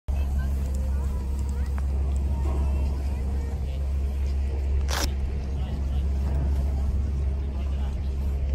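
Outdoor ski-slope ambience: a steady low rumble on the microphone under faint, distant voices of people on the slope, with one sharp click about five seconds in.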